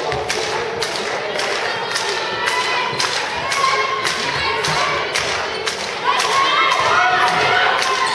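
A handball being bounced and passed on a sports-hall floor during an attack: a string of thuds, about two a second, each with a short echo in the hall. Players' shouts or shoe squeaks rise toward the end.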